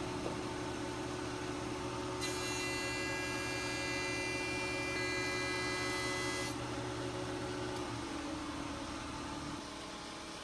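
Jointer motor running steadily while a walnut cutting-board blank is pushed on edge across the cutterhead. From about two seconds in to about six and a half seconds, a higher whine rides on the hum as the knives shave the clamp dents off the edge. The hum fades near the end.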